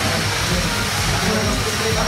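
Steady background noise with faint music underneath.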